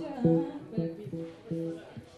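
Guitar playing a string of plucked notes, several a second, with the notes ringing at steady pitches.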